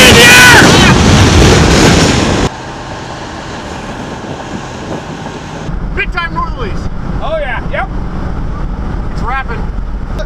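Loud wind buffeting the microphone, which stops abruptly about two and a half seconds in and gives way to a quieter steady hiss. From about six seconds in, the low steady road and engine rumble of a moving vehicle is heard from inside the cab.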